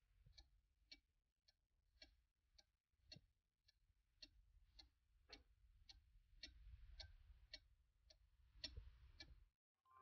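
Faint, evenly spaced tick-tock of a Black Forest cuckoo clock's pendulum movement, about two ticks a second. The even beat is the sign of a clock hanging straight and in beat.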